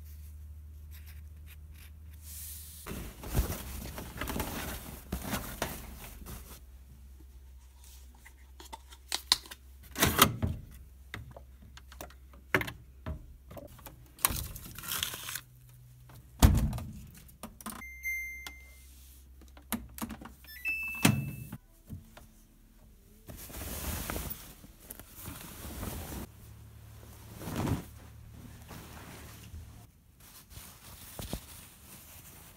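Irregular thumps, knocks and rustling from things being handled and moved, with two short high beeps about two-thirds of the way through.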